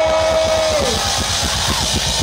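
Live rock band starting to play: fast, even drum and bass pulses under a dense wash of sound, while a drawn-out shout from the singer trails off about a second in.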